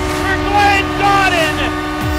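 Arena goal horn blaring in a steady tone under excited yelling, just after a goal. It cuts off abruptly right at the end.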